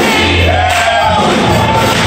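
Church choir singing loudly with instrumental backing, a low bass note held through the first second or so.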